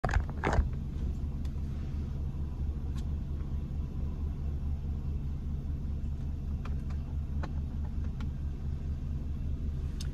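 Car engine idling, heard from inside the cabin as a steady low hum, with two sharp clicks in the first second.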